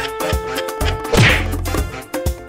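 A single loud whack about a second in, over upbeat background music with a steady beat.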